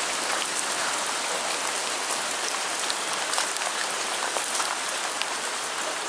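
Heavy downpour of big, fat raindrops falling steadily, with scattered sharp drop impacts through the steady hiss.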